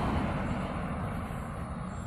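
A motor vehicle passing by on the road, its noise loudest at the start and fading away.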